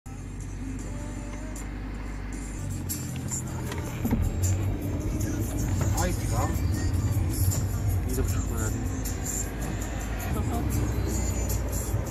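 A car driving, with engine and road rumble heard from inside the cabin. The rumble grows louder about four seconds in, with light rattling clicks over it.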